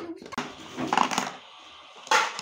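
Plastic toy play food and a toy knife being handled, with a sharp knock at the start and scraping, clattering noises about half a second and a second in.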